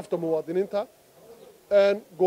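A man speaking Somali, with a pause of nearly a second in the middle.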